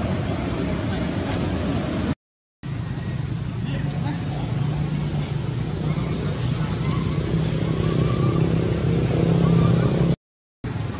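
Outdoor background with a motor vehicle's engine running nearby, a steady low hum that grows louder toward the end, with a brief cut to silence about two seconds in.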